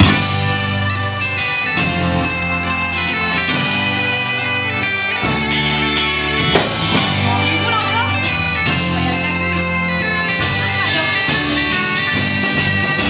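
Celtic rock band playing an instrumental intro: a bombarde carries the melody over electric guitar, bass and drums, with a steady low drone beneath. The music starts abruptly on the count-in and runs at a steady loud level.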